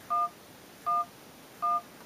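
Touch-tone keypad beeps from the Android dialer on an iPhone: three short two-tone beeps for the digit 1, about three-quarters of a second apart.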